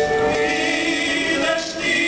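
Live mariachi ensemble playing held, choir-like notes, with a short break about three-quarters of the way through before the next chord comes in.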